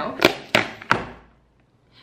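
Cardboard mailer box being pulled open by hand: three sharp thunks of the flaps within the first second, then it goes quiet.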